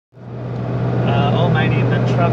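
Steady engine and road drone inside a four-wheel drive's cabin while driving, with a low steady hum; it fades in from silence at the start.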